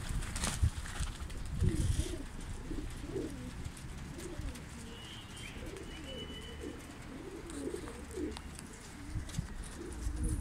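Domestic pigeons cooing over and over, low wavering calls one after another, with a few low thumps in the first two seconds.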